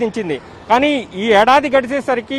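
A man speaking Telugu into a handheld microphone, with street traffic in the background.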